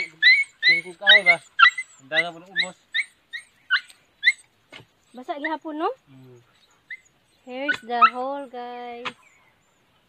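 Dogs barking, a rapid run of short high yaps at about three a second that thins out and stops about four seconds in, followed by a few longer voice-like calls.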